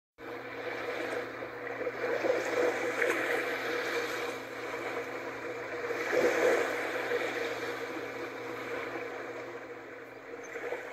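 Ship-at-sea sound effect: a steady low engine hum under a rushing wash of water noise, swelling slightly about two and six seconds in.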